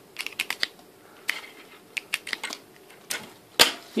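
A string of small sharp plastic-and-metal clicks as a USB stick's plug is pushed into and worked in the ports of a metal slot-plate USB bracket. The clicks come quickly at first, then scattered, with the loudest one shortly before the end.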